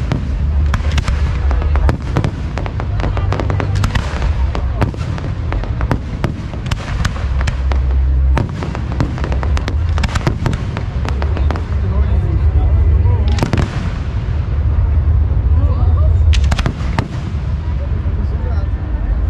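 Aerial fireworks display: a rapid, continuous run of bangs and crackles from bursting shells over a steady low rumble.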